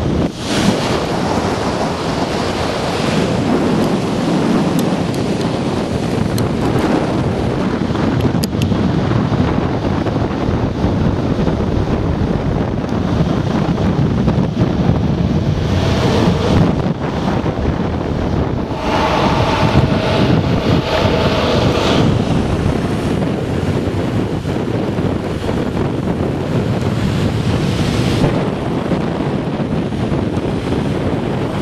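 Wind rushing over the microphone with the rolling rumble of urethane longboard wheels on tarmac, steady throughout, with a short whine about two-thirds of the way in.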